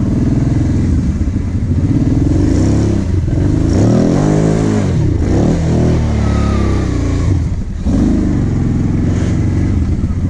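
Kawasaki KVF 750 Brute Force quad's V-twin engine, heard from the saddle, revving up and down repeatedly while riding over sand mounds, with a short drop in engine noise about eight seconds in.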